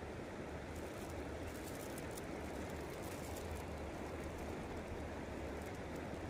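A small stream's water running, a steady even rush with a low rumble beneath.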